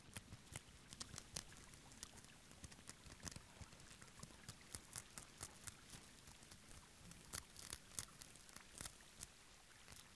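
Near silence broken by faint, irregular clicks and crackles, several a second at uneven spacing: the small scratching sounds of Formica japonica ants swarming over and biting a newly emerged dragonfly.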